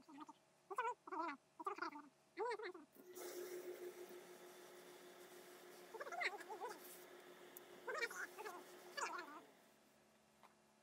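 A hose-fed steam iron hissing steadily for about six seconds, starting about three seconds in, with a steady hum under the hiss. Short pitched calls that bend up and down come four times in the first three seconds and a few more times near the end.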